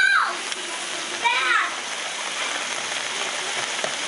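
Beef and spinach stew sizzling in the pot, a steady hiss.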